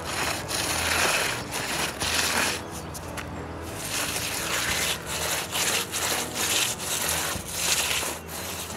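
Hand trowel scraping over wet concrete in repeated long strokes, a gritty rasp as the surface of a door sill is smoothed.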